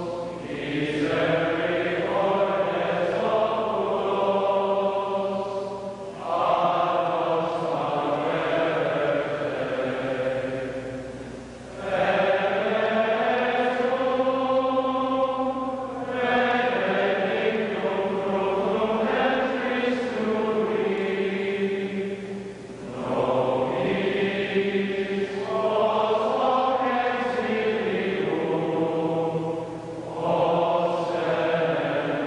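Choir singing a slow hymn in long phrases, with brief pauses between them.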